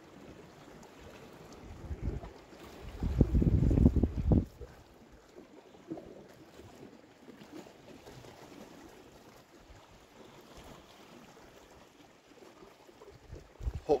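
Wind gusting on the microphone for a couple of seconds, starting about two seconds in, over a faint, steady wash of sea against the rocks.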